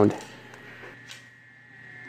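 The last syllable of a spoken word, then a faint steady hum with a thin, high, steady tone over it.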